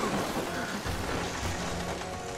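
Background music with a low rumbling and noisy crackling sound effect as lightning flashes across the sky.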